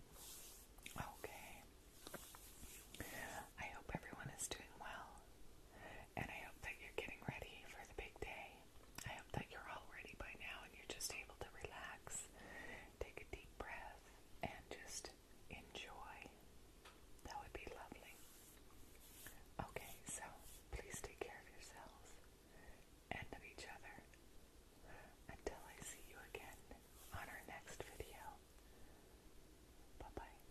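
A woman whispering softly, with scattered small clicks.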